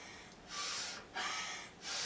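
A person's forceful breathing during a yoga face exercise: three short, hissing breaths, with the exhales pushed out through a wide-open mouth and outstretched tongue, as in lion-face breathing.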